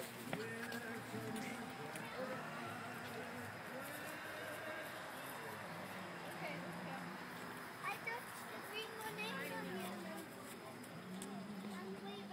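Indistinct talk of several people, voices overlapping, with only the odd clear word.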